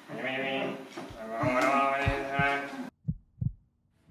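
A stage performer's voice in a drawn-out, wavering utterance over a few low thumps, cut off suddenly; then two short, low thumps about half a second apart.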